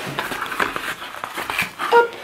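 Hands opening a small cardboard box, the flaps rubbing and crinkling in a run of small clicks and crackles, with a brief pitched sound like a short voiced note right at the end.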